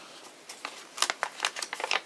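A single folded paper sheet, made into a mini zine, being opened and handled in the hands: the paper crinkles and rustles in a string of short, crisp crackles, most of them about a second in and near the end.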